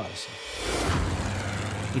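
A rushing, rumbling sound effect that swells up about half a second in and holds: a dramatised small plane losing control in flight.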